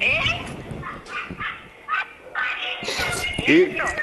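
A man laughing, mixed with broken, indistinct talk, part of it a woman's voice coming over a telephone line.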